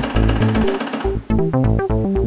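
Canon Pocketronic calculator's thermal printer buzzing rapidly for about a second as it prints a result on its paper tape, over background electronic music that carries on once the printing stops.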